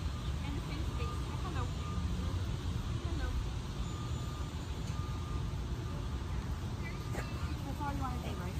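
A low, steady rumble that sets in at the start, with faint voices over it.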